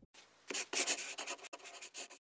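Scratchy scribbling sound effect, like a marker being drawn quickly across paper, played over a hand-lettered logo card. It is a run of rapid rough strokes that becomes loud about half a second in.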